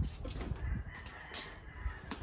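Boxers' sneakers shuffling and thudding on a concrete slab during a sparring bout, the strongest thud at the very start. A faint drawn-out call carries in the background for about a second in the second half.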